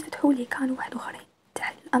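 Speech only: a lecturer's voice talking in short phrases that the recogniser did not make out, with a brief pause in the middle.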